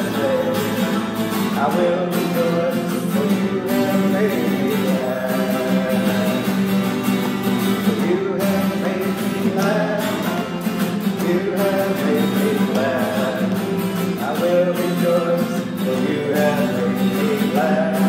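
A man singing a gospel song while strumming an acoustic guitar, a steady solo live performance.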